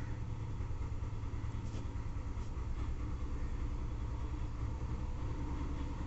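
Steady low background rumble, like a motor or engine running.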